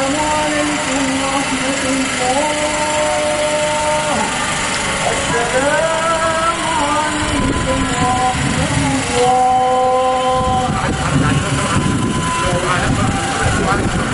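A single man's voice chanting in long, drawn-out notes over a large outdoor crowd. Many voices rise together from a little past the middle onward.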